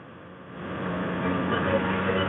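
Honda NSR 150 RR's single-cylinder two-stroke engine running as the bike is ridden, with wind and road rush. It grows louder about half a second in and then holds a steady note.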